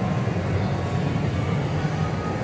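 Steady din of arcade game machines, with a continuous low rumble.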